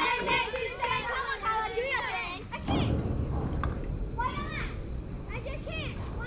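Several young girls' voices calling out and cheering at a softball game, high and overlapping, in sing-song calls. There is a brief rush of noise about halfway through.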